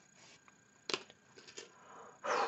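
Faint handling noise of a bulky wool knitted piece being turned over by hand: soft rustling of the fabric, with one short sharper sound about halfway through and a few lighter ones after it.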